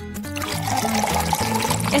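Melted ice cream pouring from a waffle cone into a mouth, a liquid pouring sound that starts about half a second in, over background music.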